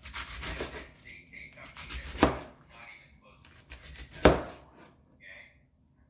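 Knife chopping on a wooden cutting board: a stretch of scraping at first, then two loud single chops about two seconds apart.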